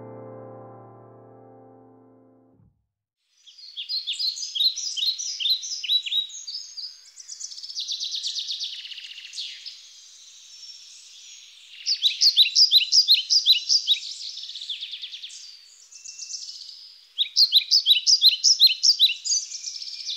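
Birds calling in trains of rapid, high chirps, about five a second, in bursts with short pauses between them. A soft piano chord dies away over the first two seconds.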